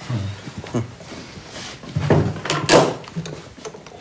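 Flight case with metal corners being carried and set down on a wooden table, giving a few knocks and thuds, with low voices murmuring.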